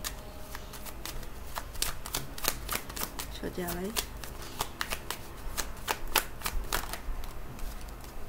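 A tarot deck being shuffled by hand: a run of quick, irregular card snaps and slaps.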